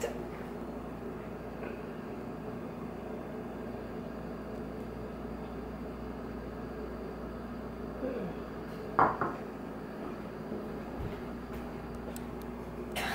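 Steady low room hum, broken about nine seconds in by a sharp knock and a smaller one after it: a glass mug set down on a wooden table.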